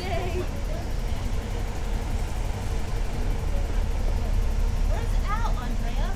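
City transit bus engine running with a steady low rumble. Brief voices come in near the end.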